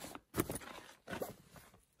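Soft rustling of a fabric duffel bag and clothes being handled, a few brief scuffs.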